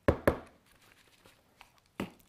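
Two quick knocks of a plastic plant pot against a wooden tabletop as the loose potting soil is shaken out of it, followed by a couple of faint ticks near the end.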